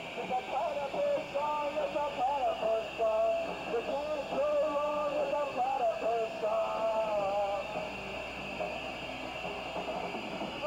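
A man singing into a microphone, his voice bending and holding notes over a steady background hiss; the singing stops about eight seconds in.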